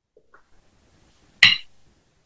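A drinking glass set down on a hard desk: one sharp clink about one and a half seconds in, the loudest sound, with a brief ring, after a few faint small knocks.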